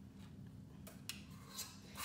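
A few faint clicks and taps of a spoon against a stainless steel mixing bowl and baking sheet as cookie dough is scooped and dropped, over a low steady room hum.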